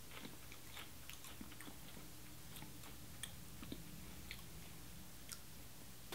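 Faint crunching and chewing of a coffee-flavoured Lay's potato chip with the mouth closed: scattered, irregular small crackles.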